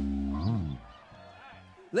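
A live rock band's held final chord with guitars ringing out, with a short rise and fall in pitch about half a second in, then stopping, leaving a quiet pause.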